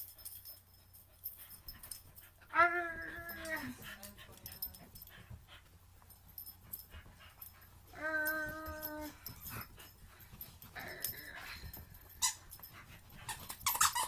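A corgi puppy makes two short whining sounds during a game of tug-of-war, each about a second long, the first about two and a half seconds in and the second about eight seconds in, with faint scuffling between them.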